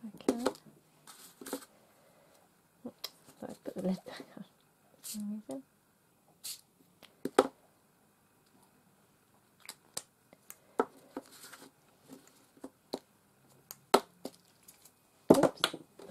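Art supplies handled on a craft table: scattered clicks, taps and short rustles, then a louder knock near the end as something is dropped.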